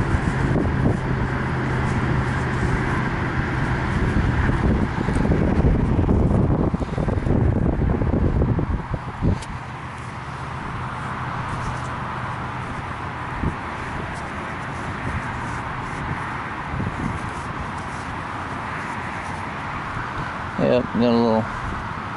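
Wind rumbling on the microphone with a steady low engine-like hum under it. Both ease off about nine seconds in to a quieter, even hiss. A voice starts near the end.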